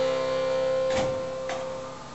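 Accordion holding a single sustained note that slowly fades. Two sharp clicks come about a second and a second and a half in.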